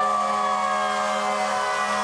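Emergency vehicle siren sounding on a single drawn-out tone that slowly falls in pitch, starting abruptly.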